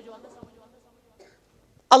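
A brief pause in a man's speech: near silence with one faint click about half a second in, then his voice starting again loudly near the end.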